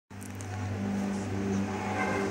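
A steady low hum from a motor or engine running, unchanging throughout.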